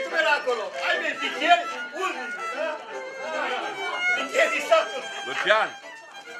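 A violin playing a folk dance tune, with people talking over it.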